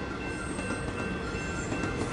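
Steady rumbling noise with a few faint held tones from the TV episode's soundtrack, with no dialogue.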